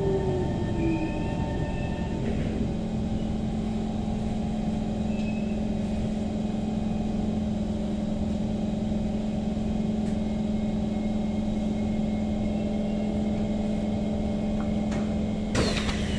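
SMRT C151 train's traction motors whining down in pitch as it brakes to a stop, then the standing train humming steadily. Near the end comes a sudden louder burst of noise as the doors open.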